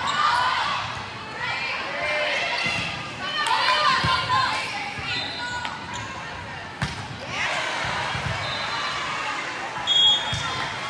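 Volleyball rally in a gym hall: ball contacts and thuds ring out among players' and spectators' shouts. A sharp smack comes about seven seconds in.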